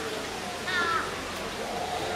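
Murmur of people's voices, with one short high-pitched call, somewhat like a crow's caw, a little before the middle.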